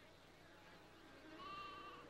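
Near silence, with one faint, short bleat from distant livestock a little past the middle.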